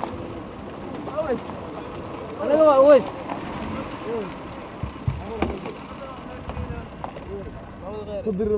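Short spoken calls from men, the loudest about two and a half seconds in, over a steady low rumble heard from inside a car.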